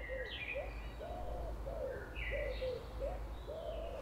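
A pigeon cooing: a steady run of short, low, rounded notes, with a few fainter, higher songbird calls.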